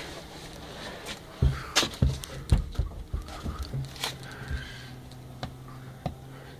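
Scattered knocks and clicks of a handheld moisture meter being moved and pressed against wooden roof sheathing. A low steady hum joins about four seconds in.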